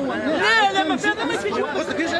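Several people talking over one another: crowd chatter in the street during a scuffle with police.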